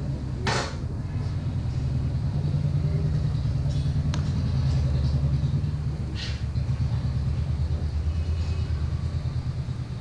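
Steady low roar of a burner firing under a large frying kadai, with a rapid flutter in it. A sharp metal clink comes about half a second in, and a short scrape near the middle.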